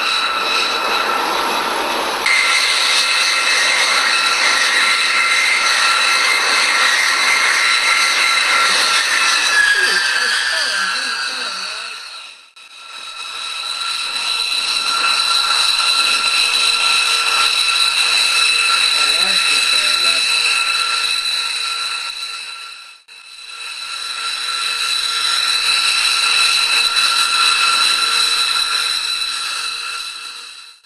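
B-2 Spirit bomber's four GE F118 turbofan engines whining steadily at taxi power, with several high tones held together and one tone sliding down in pitch before the sound dips out briefly twice.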